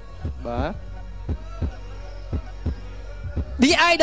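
Heartbeat suspense sound effect over a steady low drone: dull thuds in pairs about once a second. A man's voice speaks briefly near the start and again near the end.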